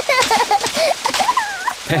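Bath water splashing, a noisy sound effect throughout, with young children's high-pitched voices squealing over it.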